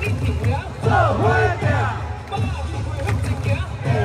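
Baseball 'chance song' cheer music playing loud over the stadium sound system, with a steady pulsing bass beat and a sung vocal phrase that repeats every couple of seconds, along with crowd voices.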